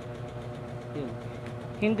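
A steady, even low motor hum holds one pitch throughout, as of a small electric motor running.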